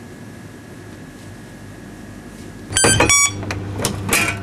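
A steady low hum, then about three seconds in a two-note electronic chime with the second note lower, like a shop door chime. Louder sharp knocking sounds follow.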